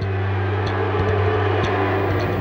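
A steady low hum over a noisy background.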